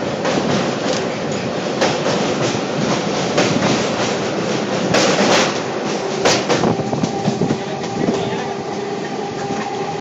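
Passenger train running at speed, heard from an open coach doorway: a steady rush of wheel and rail noise with an irregular clatter of wheels over rail joints. A faint steady whine comes in over the last three seconds.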